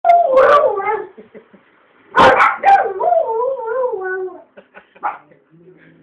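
Two dogs howling together in reply to fire-brigade and police sirens. There are two long wavering howls that slide down in pitch, the first ending about a second in and the second starting just after two seconds, followed by a few short yips.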